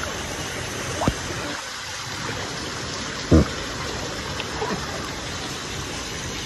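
Steady rush and trickle of water flowing along a waterpark lazy river, close to the microphone. Two dull knocks cut through it, about a second in and again, louder, just after three seconds.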